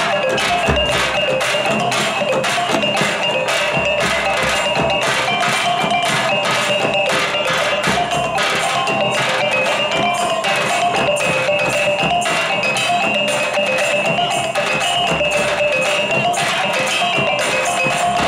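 Traditional Minangkabau music for the Galombang dance: fast, even percussion strokes under a wavering melody line, playing steadily throughout.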